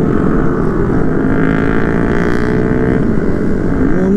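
Motorcycle engine running at road speed under rushing wind noise on the microphone; the engine pitch climbs gently for about two seconds, then drops about three seconds in.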